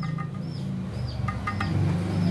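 Short high bird chirps repeating several times, roughly every half second, over a low steady hum.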